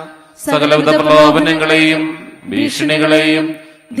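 A man intoning Malayalam novena prayers on a single steady reciting pitch, in two phrases with a short breath between.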